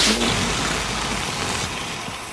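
Cartoon whoosh sound effect: a sudden loud rush of noise that fades slowly over about two seconds.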